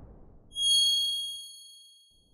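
Logo-animation sound effect: the tail of a whoosh fades out, then a single bright ding, several high ringing tones struck together, sounds about half a second in and rings out over about a second and a half.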